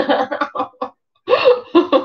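A woman laughing in a run of short bursts, breaking off briefly about a second in and then laughing again.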